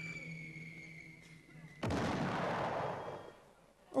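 Stage sound effects: a long, slowly falling whistle that cuts off about two seconds in and gives way to a sudden crash-like burst of noise, which dies away over a second or so. Together they play the flight and landing of a human-cannonball stunt fired from a stage cannon.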